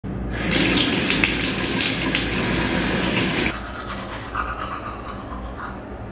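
Water running from a bathroom sink tap into the basin as a steady rush, shut off about halfway through.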